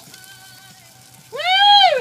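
A loud, drawn-out "Woo!" whoop of excitement, starting about a second and a quarter in, rising and then falling in pitch.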